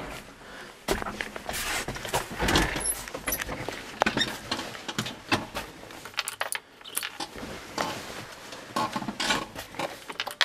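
A jangle of keys among irregular clicks, knocks and rustling from handling things in a tractor cab.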